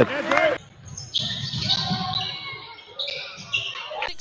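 Basketball court game sound: a ball bouncing on the hardwood and short high squeaks of sneakers on the floor, over the low murmur of the gym.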